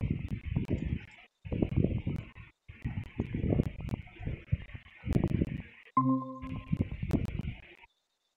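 Choppy, crackly noise coming through the video call in bursts that cut in and out abruptly with short silences between them. About six seconds in, a brief electronic tone sounds as a participant joins the call.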